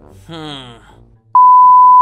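Loud, steady 1 kHz test-tone beep, the reference tone that goes with TV colour bars, starting about a second and a half in and cutting off abruptly.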